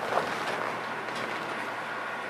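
Steady room noise with a low hum and a faint click just after the start.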